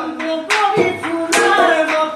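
Hand claps keeping time under a man singing a Bihu song, with a few sharp strokes spaced about half a second to a second apart.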